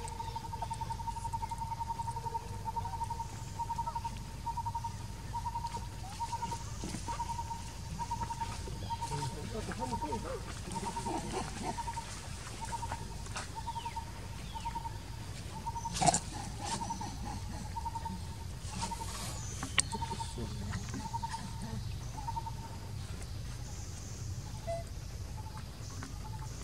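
A wild animal repeats one short, single-pitched note about twice a second for over twenty seconds before it stops near the end, over a steady low rumble. A sharp click stands out about two-thirds of the way through.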